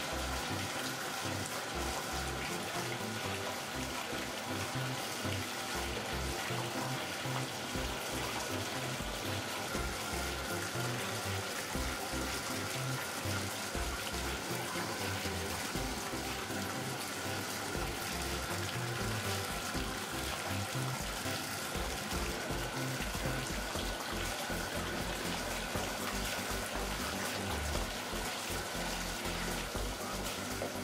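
Bath tap running steadily into a filling bathtub, the stream splashing over a bubble bar held in the hands, under background music.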